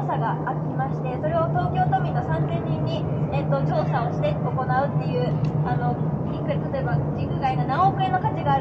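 A woman making a speech to a crowd in the open air, over a steady low hum.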